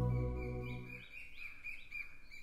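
Background music fading out, then a small bird chirping in a quick series of short, high chirps.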